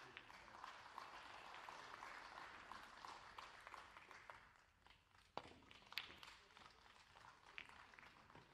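Faint patter of applause for the first few seconds. About five seconds in comes a sharp click of a cue tip striking a snooker ball, followed within a second by further clicks of ball striking ball.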